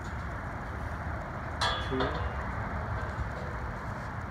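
Galvanized steel pipe clothesline frame taking a man's weight during pull-ups, with one brief sharp metallic squeak from the frame about halfway through, over a steady outdoor background hiss.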